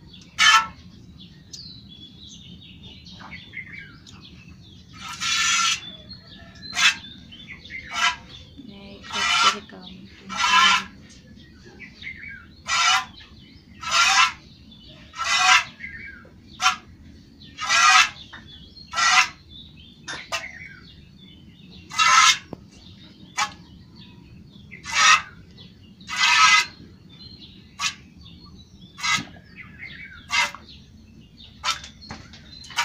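Milk squirting into a pail as a cow is hand-milked with one hand: a short hiss with each squeeze of the teat, about one every second or so, in a steady rhythm.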